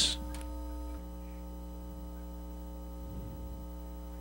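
Steady electrical mains hum, a constant low buzz with no other sound over it.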